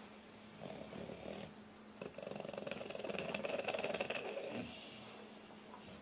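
English bulldog snoring, two rattling breaths, the second longer and louder.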